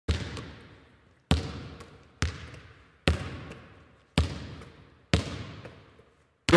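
A basketball bounced six times, about a second apart. Each bounce is a sharp thud followed by a long, fading echo, as in a large empty gym.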